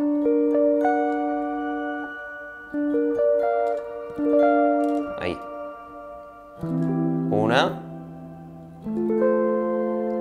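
Clean-toned Schecter electric guitar playing triad inversion shapes, the notes of each chord picked one after another and left to ring, in about four groups. Short sliding squeaks of the fingers on the strings come as the hand changes position.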